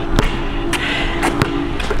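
A basketball dribbled on a hard outdoor court: three bounces, a little over half a second apart.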